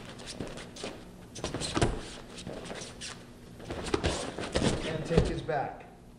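Shoes stepping and scuffing on foam grappling mats and bodies thudding together during a body-tackle takedown drill. It comes as a series of short thuds, the loudest about five seconds in.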